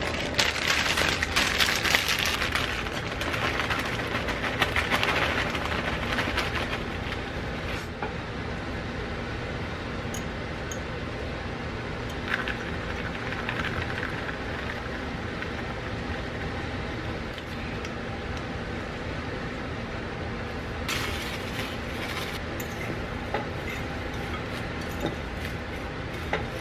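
Crinkling and rustling of a plastic salad-kit bag and salad being tossed into a bowl, busiest in the first several seconds and again briefly later on, over the steady hum of an air conditioner.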